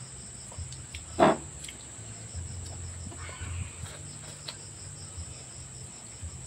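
Crickets trilling steadily on one high note, with a single short, loud sound a little over a second in.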